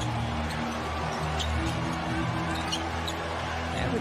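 Basketball game sound from the arena during live play: music playing over a steady crowd background, with a basketball bouncing on the hardwood and brief sneaker squeaks.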